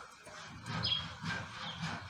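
Birds chirping: a few short, high chirps from about a second in, over a low rumbling noise.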